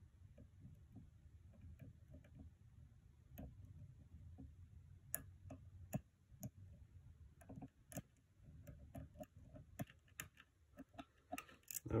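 Faint, irregular metallic ticks and clicks of a hook pick working the pins of a pin-tumbler lock cylinder under tension, with a few sharper clicks now and then. One of the pins carries an extra strong spring.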